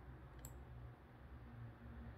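Near silence: room tone with a low steady hum and one faint click about half a second in.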